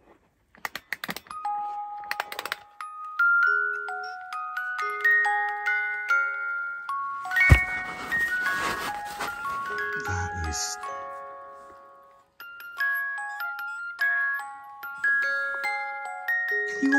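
Wind-up musical doll's clockwork music box playing a tinkling tune of single plucked notes. A few clicks at the start, a handling bump about halfway through, and the tune fades near twelve seconds before picking up again.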